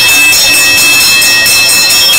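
A bell ringing loudly and continuously in rapid, even strokes, with a steady metallic ring.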